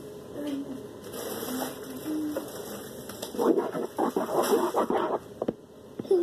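A wet slime mixture being stirred in a bowl, with a quick run of short stirring and scraping strokes in the second half.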